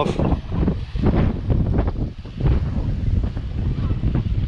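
Wind buffeting the microphone: a loud, gusting low rumble that rises and falls unevenly.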